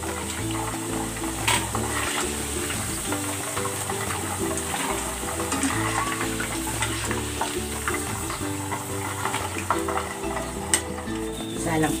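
Battered chicken pieces deep-frying in hot oil in a wok, a steady sizzle, with a couple of sharp clicks from the wire spider strainer against the wok as the pieces are scooped out.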